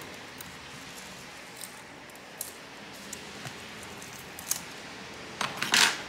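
Small-parts handling on a laptop display's circuit board and flex cable, worked with fingers and tweezers: a few faint clicks, then a short, louder rasp near the end as the board is worked loose.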